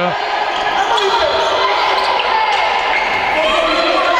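A handball bouncing on the indoor court floor during play, with a steady wash of players' voices and calls echoing around the sports hall.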